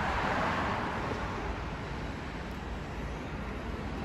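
Scania fire truck driving past without its siren. Its engine and road noise are loudest at the start and fade over the few seconds as it moves away.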